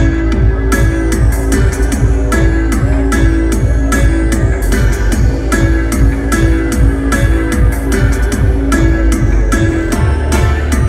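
Live electronic dub music played loud over a concert sound system, with a deep sustained bass, repeated falling bass sweeps and a steady beat of sharp drum hits.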